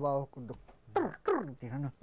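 A man speaking, in short phrases with falling pitch.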